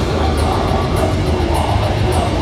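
Death metal band playing live at full volume: heavily distorted guitars over a fast drum kit, with a cymbal crash about every 0.6 s.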